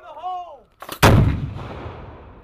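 A demolition charge detonates against a cinder-block wall: a single sharp blast about a second in, its low rumble dying away over the following second.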